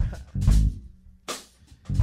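Live hip-hop band playing a sparse, laid-back groove: deep bass guitar notes punctuated by sharp drum hits, with guitar.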